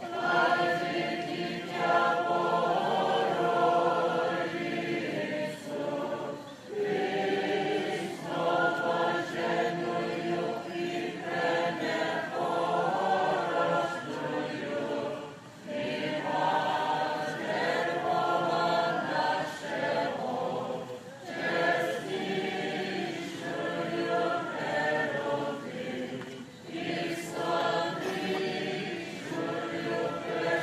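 A choir singing a cappella in sustained phrases, with short pauses between them.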